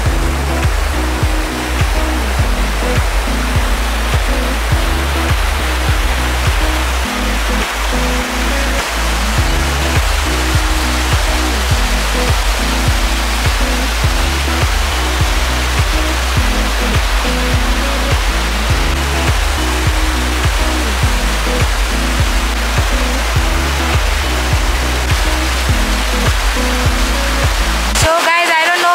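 Background music playing over the steady rush of water through river rapids.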